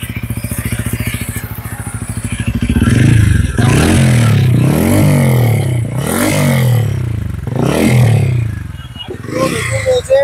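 TVS Ronin's 225 cc single-cylinder engine idling with an even pulse, then revved about four times, each rev rising and falling back, before easing toward idle near the end. Its note is likened to a Royal Enfield Bullet's.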